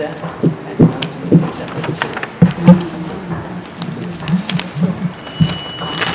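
Sheets of paper and a folder being handled and turned over at a table: rustling with irregular sharp clicks and taps, over a low murmur of voices.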